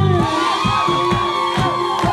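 The band drops out just after the start, leaving a held note, while the audience cheers and whoops and claps in a steady rhythm.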